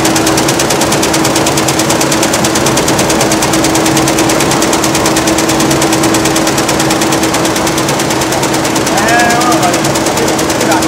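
A computerized taping embroidery machine stitching ribbon onto fabric: a fast, even needle rhythm over a steady motor hum.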